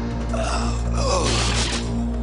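Cartoon soundtrack: a held low music drone, with a couple of short vocal sounds over it about half a second and a second in.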